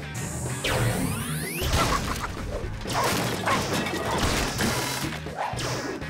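Cartoon chase sound effects over background music: sweeping whooshes in the first second and a half, then a quick run of crashes and knocks.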